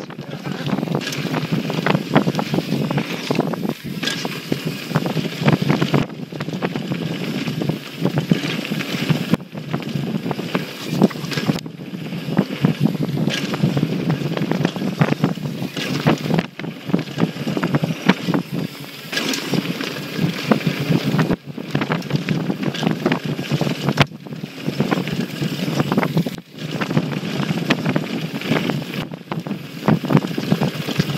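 Rushing wind on the microphone of an action camera carried on a downhill mountain bike descent, mixed with tyres running over a dirt trail and the bike rattling over bumps. The noise drops out briefly several times.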